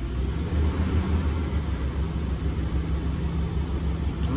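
Toyota 1G-FE two-litre inline-six engine idling steadily in park, heard from inside the cabin as an even low hum.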